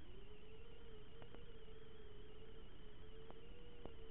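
Faint electronic tone on the analog FPV video link's audio, wavering a little around one pitch, with a thinner steady whine higher up and a few soft clicks.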